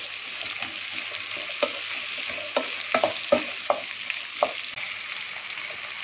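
Sliced onions, green chillies and curry leaves sizzling steadily in hot oil in a pan, stirred with a wooden spatula that knocks against the pan several times in the middle.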